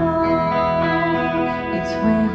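Acoustic and electric guitars playing an instrumental passage of a slow folk song, the electric guitar holding long sustained notes over the acoustic guitar.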